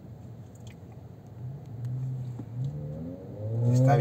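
Car engine running while driving, its pitch climbing over the last second or so as the car accelerates.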